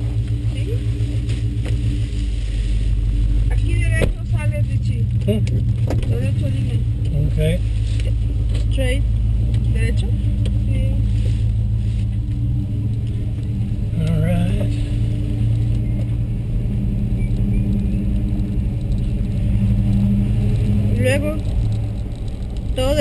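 A car's engine and road noise heard from inside the cabin during a slow drive, a steady low drone. Low voices come through now and then.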